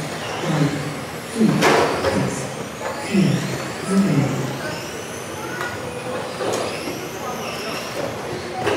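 Several electric radio-controlled touring cars racing, their motors whining and sliding up and down in pitch as they speed up and brake, overlapping one another. A sharp knock comes about a second and a half in.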